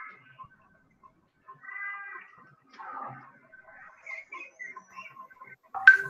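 A few short, quiet pitched animal calls spread over several seconds, with a sharp click near the end.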